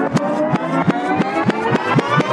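A rising build-up sound effect in a dance mix: a stack of tones gliding slowly upward over a steady train of clicks, about six a second, leading from one song into the next.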